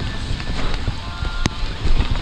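Mountain bike descending a wet dirt trail at speed: wind buffeting the helmet microphone over the tyres and bike rattling on the ground, with one sharp knock about one and a half seconds in.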